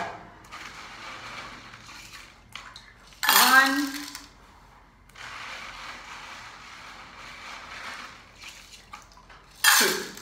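Handfuls of small stones rattling and clinking into the cups of a metal muffin tin, in two spells of clatter with scattered clicks.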